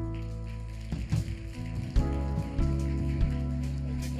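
A worship band's keyboard and guitar playing soft sustained chords over a steady bass, with scattered audience clapping in welcome.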